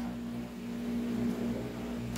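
A steady low electrical or mechanical hum with a faint hiss behind it, holding one pitch without change.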